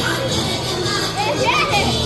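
Children's voices chattering and calling out in a crowded hall, with a high child's shout about a second and a half in, while the dance music drops low.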